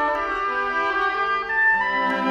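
An oboe and a string trio (violin, viola, cello) playing together, the oboe's reedy line over the bowed strings in held notes that change in steps.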